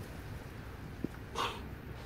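Quiet pause: faint background noise with one small click about a second in and a short hiss like a breath soon after.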